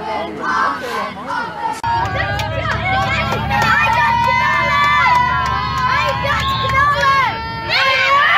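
A group of young boys shouting, then chanting loudly together in unison after a win, with long held notes. About two seconds in, a steady low coach-engine hum starts beneath the chanting.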